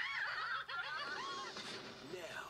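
A person laughing: a run of short laughs that rise and fall in pitch.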